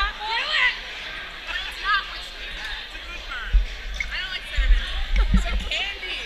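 A few dull thumps from a glass liquor bottle with a camera fixed to it being handled and tipped as a man drinks from it, over voices of people nearby.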